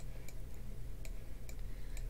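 Light computer mouse clicks, about one every half second, over a steady low electrical hum.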